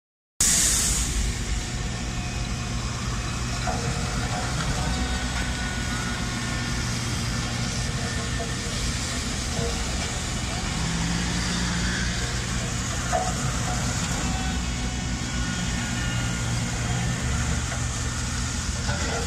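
Heavy road vehicle's engine running steadily with a low drone, over a constant hiss of rain on wet pavement.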